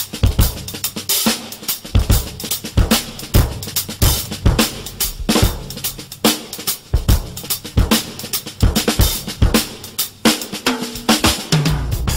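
Drum kit playing a busy groove, with low bass notes now and then, in the instrumental intro of a jazz arrangement before the vocal enters.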